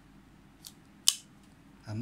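Spring-assisted blade of a Browning folding knife snapping open: a faint click, then a single sharp metallic click about a second in as the blade swings out and locks.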